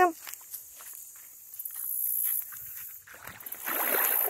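An Australian shepherd's paws stepping on wet sand at the water's edge, then splashing into shallow lake water from about three seconds in.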